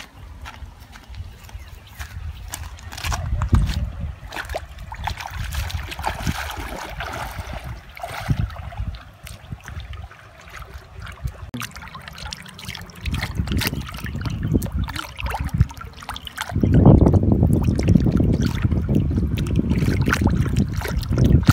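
Shallow river water splashing and sloshing as a raw pork leg is swished and rubbed by hand in it, clearly louder and closer for the last few seconds, over a low rumble.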